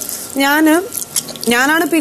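Only speech: a woman talking, in two short phrases about half a second and a second and a half in.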